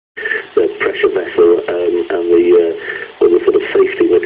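Speech: a voice talking, with a thin, radio-like sound cut off in the upper range.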